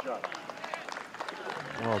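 Mostly speech: indistinct voices, then a man starts speaking near the end.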